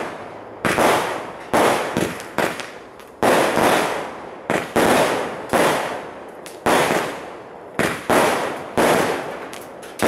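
Aerial fireworks bursting overhead in a rapid series: about a dozen sharp bangs, roughly one a second, each trailing off before the next.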